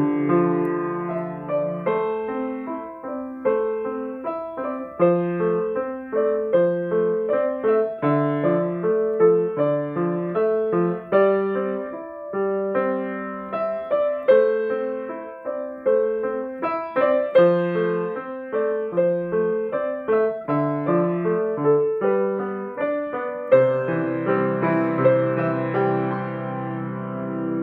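Steinway baby grand piano played solo: a melody of single struck notes over a moving bass line, each note fading after it is struck. Near the end a fuller chord with a deep bass note is struck and held.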